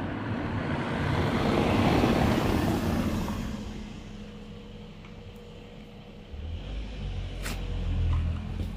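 A passing road vehicle: a rush of noise that swells to a peak about two seconds in and fades away, followed by a low rumble and a single click near the end.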